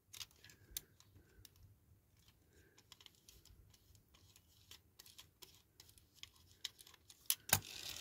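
Faint, scattered clicks and ticks from handling a diecast pullback toy car, with a sharper cluster of clicks near the end as the car is pushed back along the mat to wind its pullback motor.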